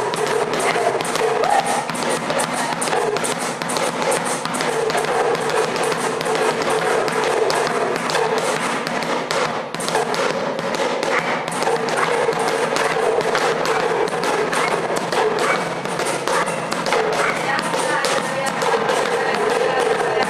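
Hand percussion jam: a small drum beaten with a curved stick and a pair of rattling hand shakers keep up a dense, continuous rhythm without a break.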